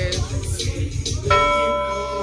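Music with a heavy, steady bass beat. A sung line ends as it begins, and about a second and a half in a single bell-like chime rings out and holds for about a second.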